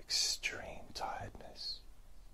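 A man whispering close to the microphone: a few breathy, unvoiced syllables with sharp hissing s-sounds, trailing off near the end.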